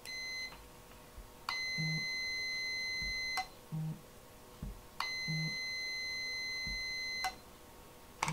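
Multimeter continuity beeper: one brief steady high beep, then two longer beeps of about two seconds each, each starting and stopping sharply. It sounds each time the modified Sonoff Basic's relay output closes as it is switched from the phone, showing continuity across the output: the switch works.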